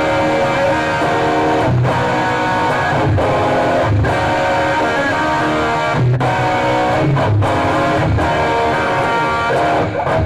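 Electric guitar played through an amplifier, a continuous passage of chords and single notes, heard over a video-call connection.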